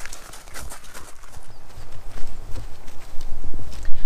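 Irregular clicking taps of running-pole tips striking the ground along with footsteps, as two people walk off using the poles. Underneath is a low rumble of wind on the microphone that grows stronger in the second half.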